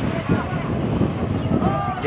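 A Caterpillar 950E wheel loader's diesel engine running, with men's voices calling over it.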